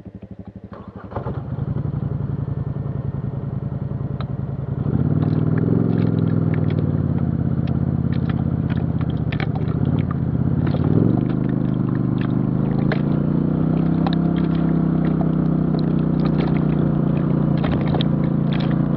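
ATV engine running on a gravel trail, picking up about a second in and rising again about five seconds in, dipping and climbing once more near eleven seconds before holding steady. Gravel clicks and crunches under the tyres throughout.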